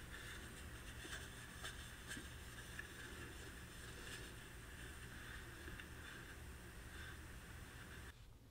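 Faint rubbing and rustling of a folded tissue being slid back and forth between the handle scales of a straight razor, with small light ticks, over a low steady room hum.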